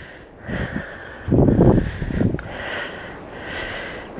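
A person's breath sounds close to the microphone, in two short bursts about half a second and a second and a half in.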